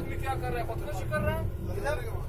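Steady low rumble of a moving road vehicle heard from inside its cabin: engine and tyre noise, with faint voices talking over it.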